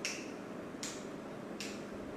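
Three short, sharp clicks, about eight-tenths of a second apart, over a steady background hiss.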